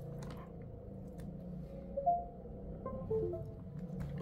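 Electronic connection chime as a USB-C cable is plugged into an LG V60 phone. One short tone comes about two seconds in, then a quick run of short tones stepping down in pitch, over a steady low hum.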